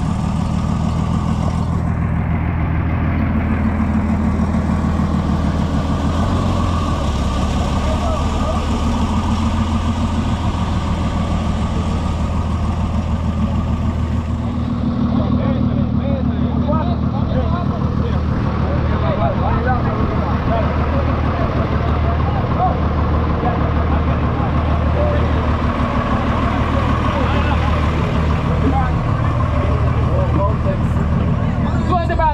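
Engine of an old military-style safari truck idling with a steady low hum, with a group of people's voices talking over it, busier in the second half.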